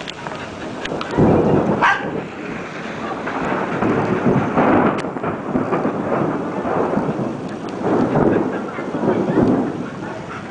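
Storm noise: a steady rushing sound with three loud rumbling swells that rise and fade, about a second in, in the middle and near the end.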